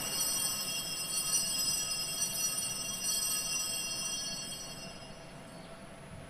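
Altar bells (a cluster of small Sanctus bells) ringing at the elevation of the chalice during the consecration: a steady ring of several high tones that fades away about five seconds in.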